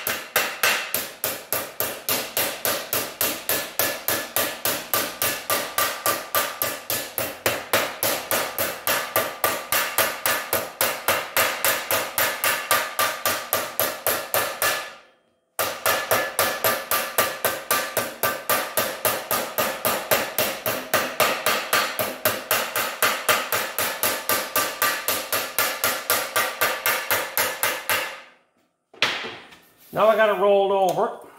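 A hand hammer beats the folded-over lip of a sheet-steel panel flat against a steel I-beam, in a fast, even run of blows at about four a second. Each blow leaves a short metallic ring. The hammering breaks off briefly about halfway through and stops shortly before the end.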